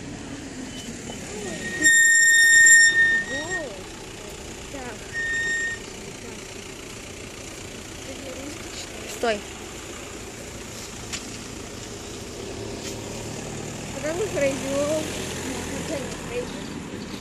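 Two high-pitched electronic beeps at one steady pitch, the first loud and about a second long, the second shorter and quieter about three seconds later, over steady background traffic noise.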